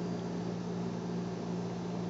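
Steady low electrical hum, a few even low tones, with a faint hiss over it.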